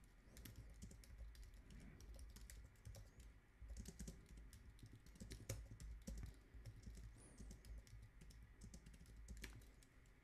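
Faint typing on a computer keyboard: a quick, irregular run of key clicks.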